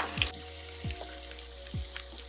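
Soft background music with a low, steady beat.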